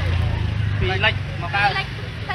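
A woman talking in Khmer in short bursts, over a steady low rumble that is strongest in the first second.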